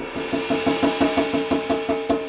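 Drum kit played with felt mallets in fast alternating strokes, about six or seven a second, each stroke giving a pitched tom-like tone, over a cymbal wash that swells and grows louder during the first second.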